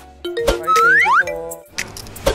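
Background music with an edited-in cartoon-style transition sound effect: a sharp hit, then two quick rising whistle-like glides about a second in, ending in a few clicks.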